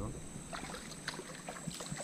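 Quiet outdoor ambience: a steady high insect drone with scattered faint clicks and rustles.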